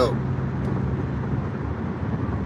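Steady road noise heard from inside a moving car on an expressway: a low, even engine and tyre hum.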